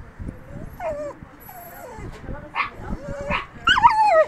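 Dog whining: several short, high whines that rise and fall in pitch, the loudest near the end.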